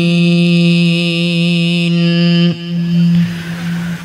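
A male Quran reciter's voice holding one long, steady drawn-out note at the close of a verse (a tajweed elongation), cut off about two and a half seconds in. A short, quieter breath-and-echo gap follows before the next phrase.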